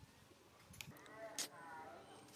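Newborn macaque crying: a high, wavering call that starts about halfway through, with a sharp click in the middle of it.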